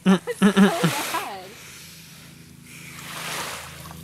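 A person's voice in the first second or so, then a soft rush of water splashing at the shoreline, swelling about three seconds in and fading again.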